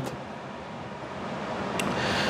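Steady low background hiss of room noise that grows a little louder toward the end, with a faint click near the end.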